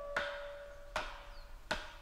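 Three sharp chops of a blade into bamboo, about three-quarters of a second apart, over a single fading piano note.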